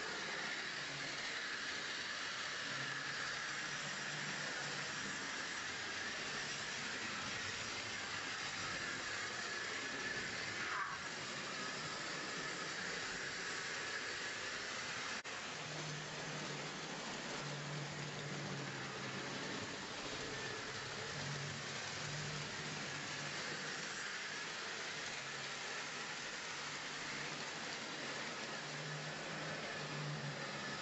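Model railway locomotive, a Drummond M7 tank engine model hauling a mixed freight, running on the layout: a steady whir of its electric motor and wheels on the track, with a low hum that comes and goes in the second half.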